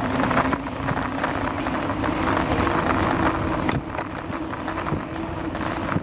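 Bicycle riding over a paved path, its tyres rumbling and the frame rattling and jolting, with wind on a handlebar-mounted microphone and a steady hum underneath.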